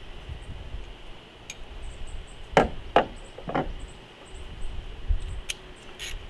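Three sharp knocks in quick succession in the middle, with a few faint clicks around them: metal hand tools being handled as work on the engine fasteners begins.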